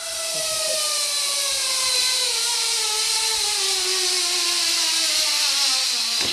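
Zipline trolley pulleys running along the steel cable, a whine with a high hiss that falls steadily in pitch as the rider slows on the approach, dying out near the end as she reaches the platform.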